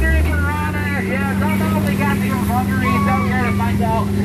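Continuous talking over the steady low hum of the tour boat's motor; the hum rises a little in pitch at the start, then holds even.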